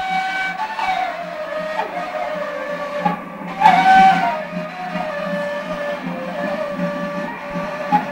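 A long wooden end-blown shepherd's flute playing a wavering folk melody of held notes joined by slides, with a steady low drone beneath it; the melody rises to a louder, brighter note a little before the middle.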